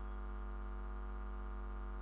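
Steady electrical hum from a public-address sound system: an unchanging low drone with a stack of even higher overtones.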